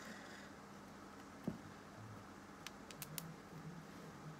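Faint handling sounds as a paper tissue is unfolded and a thin chain necklace is lifted out of it, with one soft thump about a second and a half in and a few light clicks near the end.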